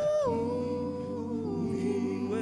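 All-male collegiate a cappella group singing a soft, sustained chord with no beat. The top voice steps down in pitch in the first half-second, over a steady low bass note.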